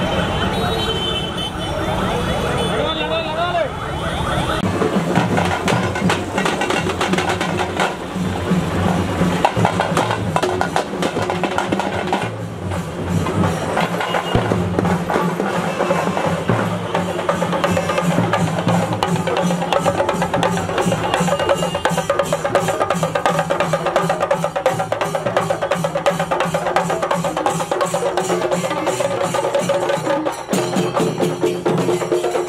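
Procession music with loud, fast, steady drumming, with voices mixed in; for the first few seconds voices and music are heard, and the drumming takes over about four and a half seconds in.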